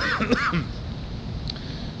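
A man coughing, two coughs in the first half second, from an illness he is still getting over ('sicker than a dog'). After that only a low steady hum of the city street.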